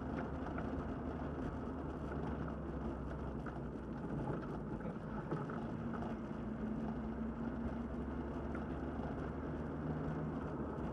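Triumph TR7's four-cylinder engine running steadily as the car drives slowly along a concrete track, a steady low drone with road noise, heard from inside the cabin.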